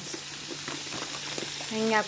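Chopped vegetables sizzling as they fry in olive oil in a pan, an even crackling hiss with a few faint clicks.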